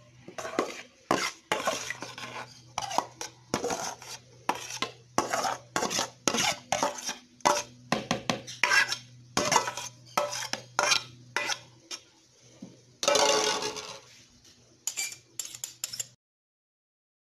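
Metal spoon scraping and clinking against a stainless steel bowl and a plastic blender jar as soaked bulgur wheat is spooned into the blender: a run of short clinks and scrapes, two or three a second, with one longer scrape near the end.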